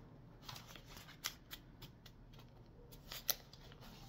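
A deck of cards being shuffled by hand: faint, scattered clicks and snaps of cards against each other, the sharpest about a second in and a little past three seconds.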